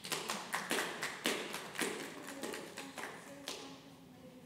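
Hand clapping: uneven applause at about four claps a second, dying away with a last clap about three and a half seconds in.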